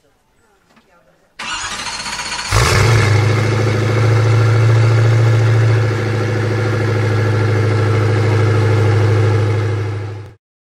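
Koenigsegg Agera RS's twin-turbo V8 starting: the starter cranks for about a second, then the engine fires with a short flare of revs and settles into a loud, steady idle.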